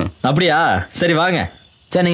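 A person's voice making two drawn-out, quavering "eh" cries, each wavering in pitch and falling away at the end, with a short pause after the second.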